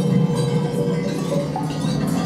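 Baschet sound structures ringing: held metallic tones, low and mid, with light clinks and chiming notes over them.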